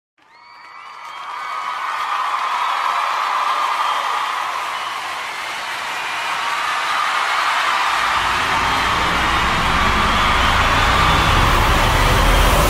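A live audience cheering and whooping, fading in over the first couple of seconds and continuing as a dense roar of voices. A deep low rumble joins it about eight seconds in.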